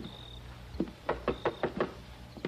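Knocking on a door: one sharp knock right at the start, then a quick run of about six knocks in the second half.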